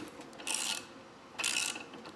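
Hand ratchet clicking in two short bursts on its back-strokes as it unscrews a broken exhaust bolt, by a nut welded onto it, from an aluminum LS cylinder head. The bolt turns out easily.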